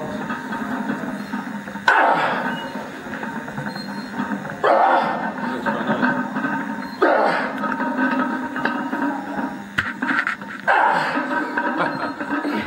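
A man's loud shouts of effort, four bursts a few seconds apart, each starting suddenly and trailing off, as he strains under a heavy barbell lift.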